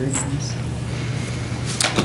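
Steady low electrical hum and room noise picked up by the meeting-room microphone system, with a brief soft noise near the end.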